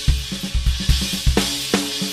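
Recorded rock music led by a drum kit: kick drum, snare, hi-hat and cymbals keep a steady beat of about three hits a second over held low notes.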